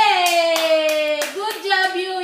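A young child's voice holding a long drawn-out note that sinks slightly in pitch, then a second held note about a second and a half in, with several sharp hand claps through it.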